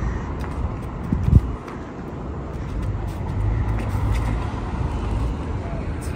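Road traffic on a city street: a low, steady rumble of passing vehicles that swells from about three seconds in, with a brief sharp knock just after a second in.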